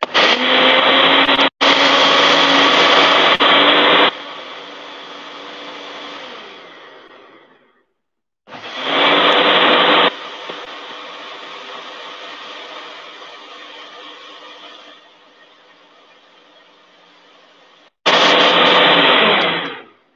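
Electric kitchen blender run in three loud bursts, the first about four seconds long and the others shorter; after each one is switched off a quieter sound fades away over a few seconds as the motor runs down.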